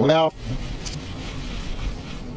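A man's voice played backwards cuts off in a brief garbled syllable right at the start. A pause follows, filled with the recording's steady low rumble and hiss.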